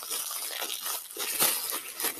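Plastic packaging being handled and pulled off a fabric strap by hand: an irregular, crackly rustle.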